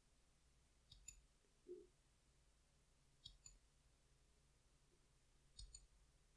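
Near silence broken by three faint pairs of short computer-mouse clicks, spaced a couple of seconds apart.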